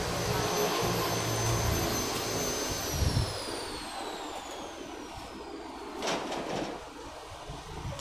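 A steady high-pitched mechanical whine over a low hum. About three seconds in the hum stops and the whine slides steadily down in pitch over the next two seconds or so. A brief burst of noise comes about six seconds in.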